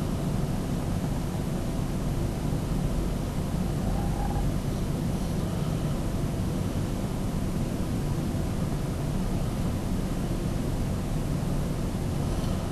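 Steady low rumbling background noise: room tone with no distinct events.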